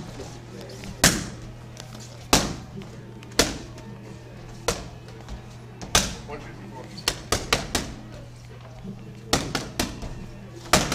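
Boxing gloves smacking into focus mitts. Single punches land about every second and a quarter, then comes a quick combination of about five strikes, and a fast three-punch combination near the end.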